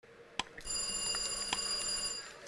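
Quiz-show timer ticking about once a second, then a contestant's answer buzzer: a high, bell-like ring that starts about half a second in and holds for under two seconds.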